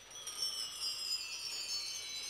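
Wind-chime sound played on a Korg electronic keyboard: a shimmer of many high chiming tones that drifts slowly downward in pitch, coming in suddenly at the start.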